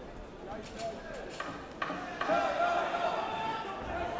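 Gloved punches landing in a kickboxing exchange: several sharp smacks in the first two seconds, then raised voices shouting over the arena noise from a little past the middle.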